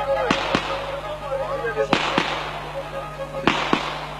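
Loud sharp bangs in pairs, a pair about every second and a half with each pair's two bangs a quarter second apart, each ringing briefly. Kemençe music is faintly under them.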